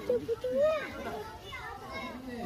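High-pitched voices of children talking and calling out, with no clear words.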